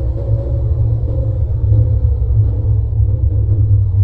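Loud, deep, steady rumble, a heavily bass-heavy edited sound, with a faint higher tone fading beneath it that cuts off suddenly at the end.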